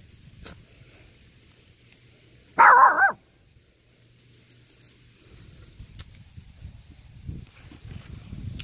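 A dog barks once, short and loud, about two and a half seconds in.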